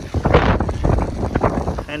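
Wind buffeting the microphone over choppy water lapping against a wooden dock, a steady rumble.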